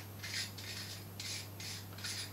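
Threaded diaphragm ring of a Welch Allyn Harvey DLX stethoscope chest piece being twisted off by hand, giving a faint scraping in about four short strokes, one for each turn of the wrist.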